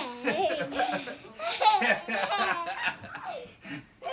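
A young girl laughing hard, in repeated bursts of high-pitched giggling.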